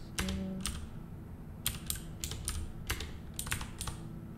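Computer keyboard typing: keys clicking in irregular short runs, with a pause of about a second near the start.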